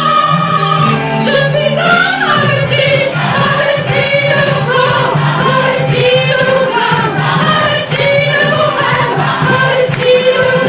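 A woman singing a song live into a microphone, holding and shifting between sung notes.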